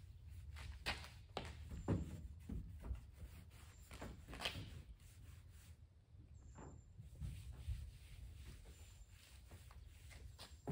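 Microfiber towel wiping polish residue off car paint by hand: a series of short, soft rubbing strokes, about ten in all, over a low steady hum.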